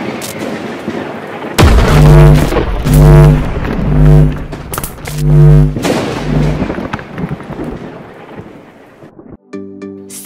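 Cinematic logo-reveal music: a rumbling, thunder-like bed with a series of deep booming hits about a second apart, swelling and then fading out. A brighter jingle with gliding tones cuts in just before the end.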